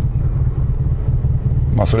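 Steady low road and engine rumble heard inside the cabin of a Honda N-ONE RS kei car while driving.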